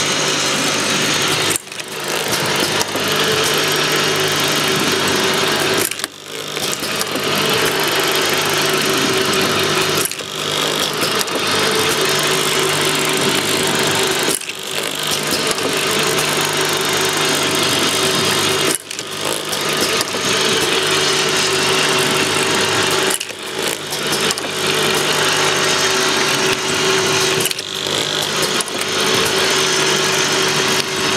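E-liquid bottle turntable filling, plugging and capping machine running: a steady mechanical clatter and hum from its drives and heads, with brief drops in level about every four and a half seconds.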